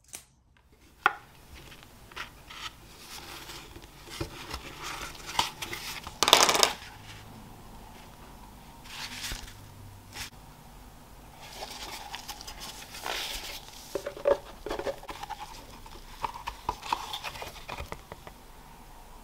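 Card lining being pried and peeled by gloved hands out of an Omega watch box, where it is stuck down with adhesive: irregular scrapes, rustles and small clicks, the loudest a rasping scrape about six seconds in.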